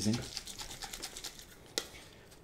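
Faint rapid ticking and rustling from small objects being handled, then one sharp click near the end.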